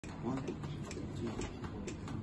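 A man's voice counting in the tune just before the band starts, with soft, even clicks keeping time about twice a second.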